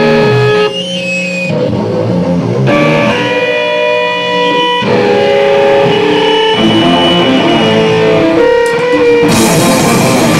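Amplified electric guitar played live on its own, letting ringing chords sustain and changing them every couple of seconds. Near the end the full hardcore band comes in with drums and cymbals.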